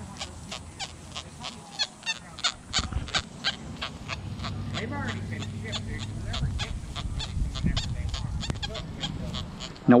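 XP Deus metal detector with an X35 coil giving low, buzzing iron tones in a full-tones program as the coil sweeps over a deep silver quarter surrounded by iron, strongest from about three to eight seconds in. A steady ticking about four times a second runs underneath, with a few short high chirps.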